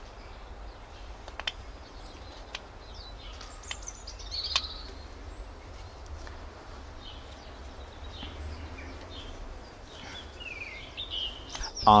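Whittling knife paring a lime-wood blank, with a few small clicks of the cuts in the first half. Wild birds chirp a few times, around the middle and again near the end, over a low steady outdoor rumble.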